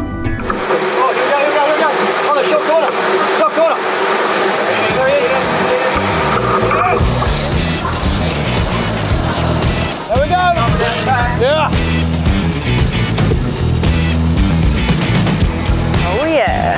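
Game-fishing boat underway while trolling: a steady rush of engine and wash noise, stronger from about halfway, as a fish strikes a trolled lure. Crew members give short shouts near the start and again about two-thirds of the way in. Background music runs underneath.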